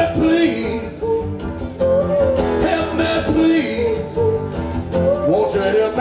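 A live rock band playing between sung lines: electric guitar and a steady beat, with a melodic line that slides and wavers in short phrases about every two seconds.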